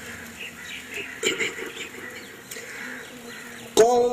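Quiet background murmur with a few faint chirps, then, just before the end, a man suddenly begins a loud, held, melodic Quran recitation into a microphone.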